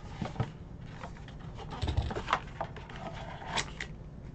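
Handling sounds: scattered light taps and rustles from cardboard packaging and a plastic graded-card slab moved about on a desk, with a soft low thud about two seconds in.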